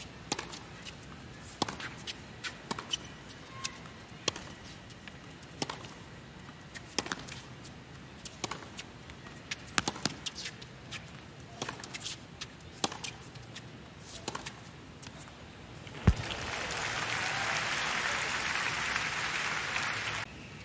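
Tennis rally on a hard court: a string of sharp pops from racket strikes and ball bounces, roughly one a second. About sixteen seconds in, a louder thud ends the point and the crowd applauds.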